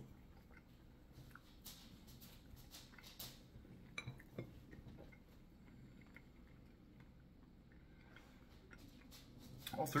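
Quiet chewing with scattered faint clicks and small knocks, mostly in the first half, then little but room tone.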